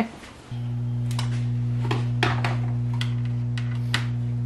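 A steady low hum starts abruptly about half a second in and holds one unchanging pitch, with a few light clicks over it.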